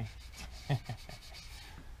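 Small plastic squeegee rubbed over the transfer tape of vinyl lettering, a run of short scratchy strokes that stop near the end, with a man's short laugh at the start.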